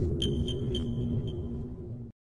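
Electronic logo intro sting: a low rumbling drone with held tones, and over it a high, sonar-like ping that repeats about five times in quick succession and fades away.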